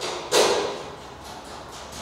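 A single sharp knock about a third of a second in, ringing briefly, followed by a few faint light clicks.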